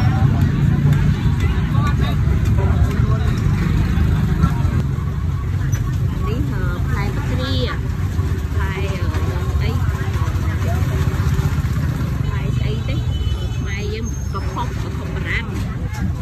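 Busy outdoor market ambience: a steady low rumble of passing motor traffic, with scattered voices of vendors and shoppers.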